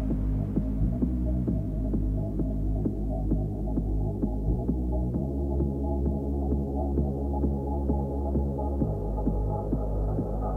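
Techno breakdown with the kick drum dropped out: a steady low bass drone under held synth tones, with fast light percussive ticks running over it. A higher tone joins near the end.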